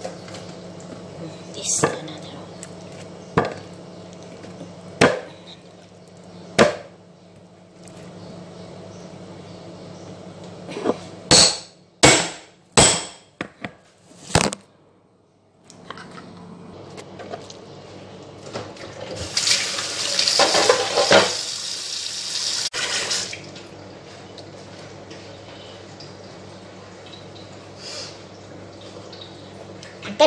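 Kitchen sink tap running for about four seconds in the second half, after a run of sharp clicks and knocks from kitchen handling.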